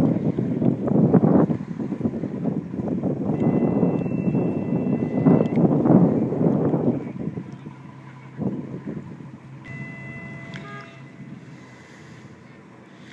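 Wind buffeting the microphone in gusts, loud for about the first seven seconds and then dying away. A steady low hum runs beneath, and thin high steady tones sound briefly twice.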